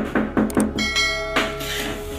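Background music with a quick, even beat, then a bell chime from a subscribe-button animation rings out about a second in and fades away.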